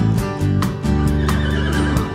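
Background guitar music with a horse whinnying over it, a wavering high call in the second half.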